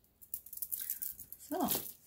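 A strand of 8 mm dyed quartz beads clicking and rattling against each other as it is handled and laid down on the tabletop: a quick run of small, sharp clicks.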